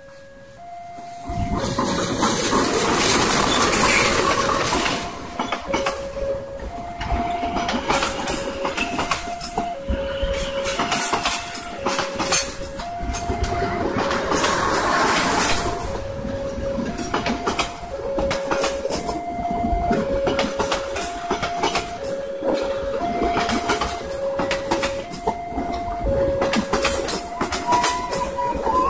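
Passenger train passing at speed: a sudden rush of noise as it arrives about a second in, then the steady rumble and clickety-clack of coach wheels over the rail joints, with one sharp bang near the middle. Throughout, the level crossing's electronic alarm sounds an alternating high-low two-tone, about one tone a second.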